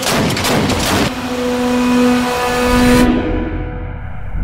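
Anti-aircraft gun firing a rapid burst of about half a dozen shots in the first second, over trailer music with held notes, followed by a low rumble near the end.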